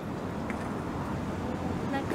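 Steady outdoor city background: a low hum of distant road traffic.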